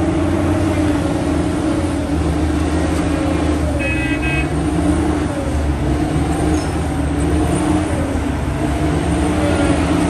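Large wheel loader's diesel engine working steadily under load, its pitch wavering, as the machine moves a marble block on its forks. A short high beep sounds about four seconds in.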